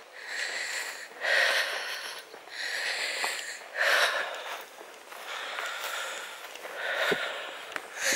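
A person breathing close to the microphone while walking, about seven breaths at roughly one a second, each a short airy rush.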